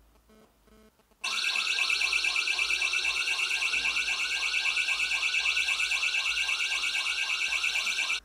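An electronic alarm starts about a second in and sounds loud and steady, a rapid pulsing warble of about four to five pulses a second: the burglar-alarm alert set off when the door-mounted tracker's motion sensor picks up a knock on the door.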